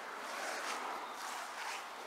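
Steady noise of distant highway traffic, swelling slightly about half a second in and easing back.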